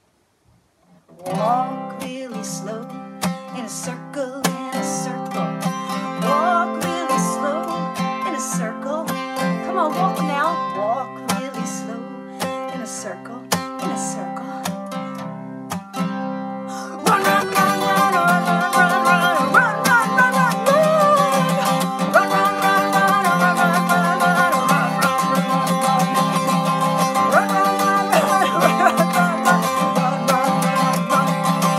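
Acoustic guitar played without words after about a second of silence: lighter picking at first, then louder, fuller strumming from about halfway through.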